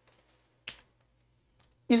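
A single short click about two-thirds of a second in, in an otherwise quiet pause; a man's voice starts speaking right at the end.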